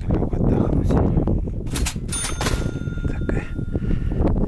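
Wind buffeting the microphone. A short bright rattle comes just before two seconds in, then a bell-like ding that rings on for about a second and a half.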